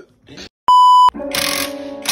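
Television colour-bars test tone: a single steady high beep lasting about half a second, starting about two-thirds of a second in. It is followed by a hissing noise with a low steady hum.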